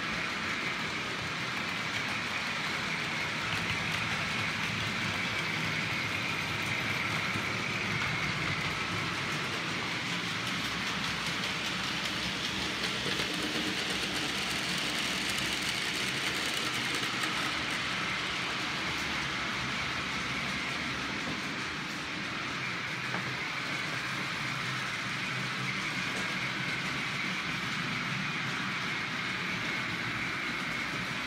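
Several OO gauge model trains running on the layout's track: a steady whir of small motors and wheels on the rails.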